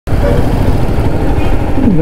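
Motorcycle engine running at low speed among surrounding traffic noise, with a voice starting just at the end.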